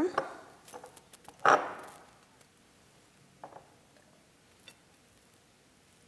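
Citrus slices dropped into a glass carafe of liquid: one short splash about one and a half seconds in, then a few faint clicks and plops.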